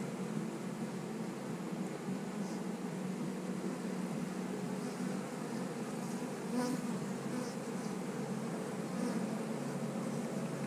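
Honey bees buzzing around an open hive, a steady low hum of many wings.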